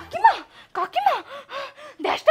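A woman's gasping, distressed cries as she wakes from sleep: one loud cry near the start, then a string of shorter cries rising and falling in pitch.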